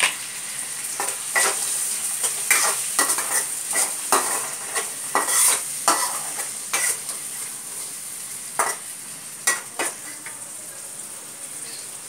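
Green peas and spices frying in oil in a black kadai, sizzling steadily while a spatula stirs and scrapes against the pan. The scraping strokes come thick and fast for the first several seconds, then thin out to a few near the end.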